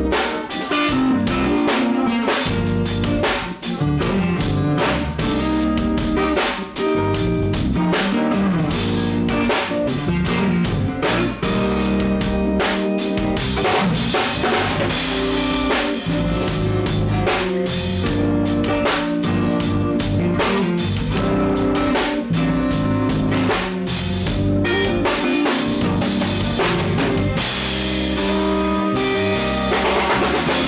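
Drum kit played in a steady R&B pocket groove, with kick drum, snare with rimshots and cymbals keeping time under other instruments holding sustained notes. The beat runs evenly with no break.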